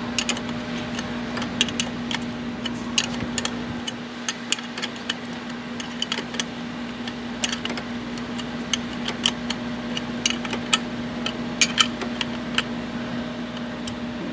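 Ratchet with a 7/16-inch socket tightening two 1/4-20 bolts on an oil catch can mount: a run of irregular, sharp metallic clicks. A steady low hum sits underneath.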